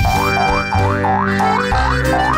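Cartoon 'boing' spring sound effects, a quick run of rising pitch glides about four a second, laid over background music with sustained chords and bass.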